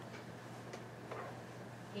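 Classroom room tone: a steady low hum with a few faint ticks or distant murmurs.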